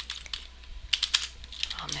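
Computer keyboard keys clacking in an uneven run as two words are typed, with a denser cluster of keystrokes about a second in.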